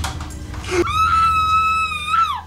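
A loud, high-pitched scream of fright starts about a second in, is held steady, and drops in pitch as it breaks off. Low, droning horror music runs underneath.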